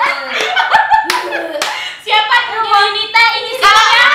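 A few sharp hand claps among a group of young women laughing, followed by loud excited voices from about halfway through.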